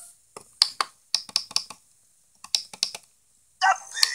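Remote control buttons being pressed: a quick run of sharp clicks in two clusters, about a dozen in all.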